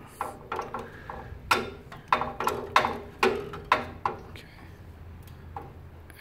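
Mechanical beam scale's calibration screw being turned with a flat screwdriver: a series of about nine sharp metallic clicks and taps in the first four seconds, then only a faint steady hum.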